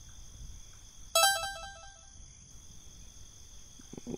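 A short phone notification tone, a quick run of stepped beeps lasting about a second, starting about a second in.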